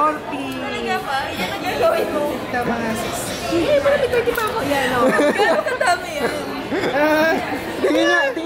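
Several people chatting and talking over one another at a table.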